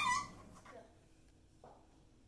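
A child's short excited cry of "yeah!" at the very start, rising in pitch, then only faint room sounds.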